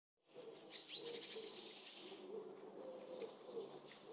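Faint birdsong: low cooing with higher chirps over it, and a quick run of repeated notes beginning near the end.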